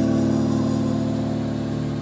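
Live band holding one sustained chord on a stage keyboard, with the bass underneath, steady and unchanging.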